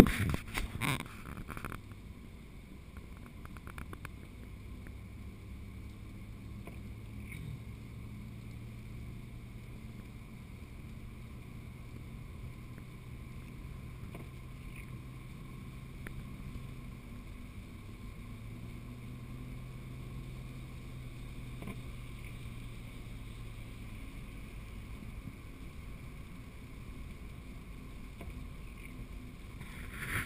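A car driving, heard from inside the cabin: a steady low engine hum and road rumble, the hum dipping briefly about 17 seconds in and fading a few seconds before the end.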